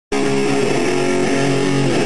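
Electric guitar holding one chord, which starts abruptly and rings steadily.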